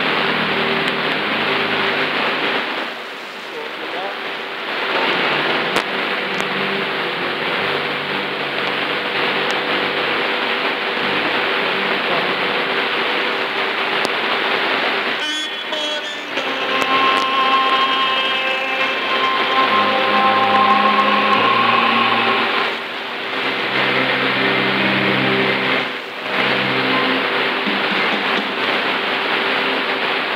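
Shortwave broadcast on 6.00 MHz coming through a Panda 6208 portable radio's speaker: muffled programme audio buried in a dense hiss of static, with a faint steady tone underneath. Held musical notes come through more clearly in the middle.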